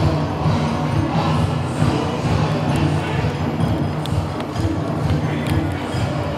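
Bon odori festival music playing loudly and without a break, with the murmur of a large crowd underneath.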